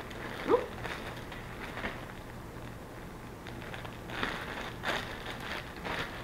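Plastic packaging rustling and crinkling as small items are handled and unwrapped, in scattered faint crackles with a busier stretch about four to five and a half seconds in.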